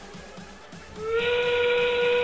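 FTC field's endgame warning sound, a steady single-pitched tone starting about a second in, signalling 30 seconds left in the match and the start of endgame.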